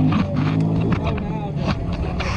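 An engine running at low speed, steady and low, strongest in the first second or so, under muffled voices and a few sharp clicks.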